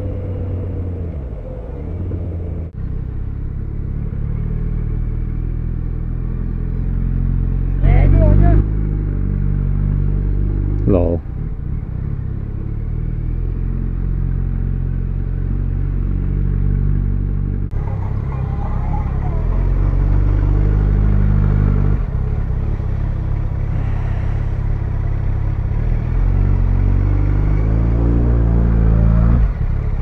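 Yamaha FZ1N motorcycle's inline-four engine running under way in traffic, heard from the rider's helmet, its note stepping up and down with the revs. Two short, louder sounds come about eight and eleven seconds in.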